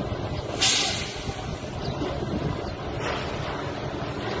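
Heavy construction machinery running with a steady low rumble. A short, loud burst of hiss comes just over half a second in, and a fainter one about three seconds in.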